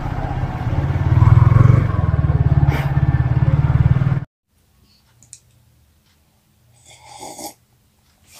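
Motorcycle engine running at low speed, a low, rapid pulsing that cuts off suddenly about four seconds in. After that it is quiet, with a faint short noise near the end.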